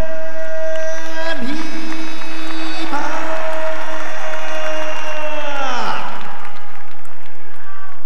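Ring announcer calling out a wrestler's name in a long drawn-out cry, held on one note for several seconds and falling away about six seconds in, followed by crowd cheering and applause.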